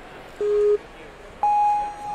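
Electronic start-timer countdown beeps: a short low beep, then about a second later a longer, higher-pitched start tone.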